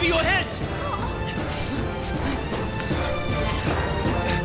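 Fight-scene soundtrack: music running under a series of hits and crashes, with a bending vocal cry near the start.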